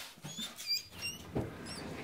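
Newborn Yorkshire Terrier puppy squeaking: several short, high-pitched squeaks.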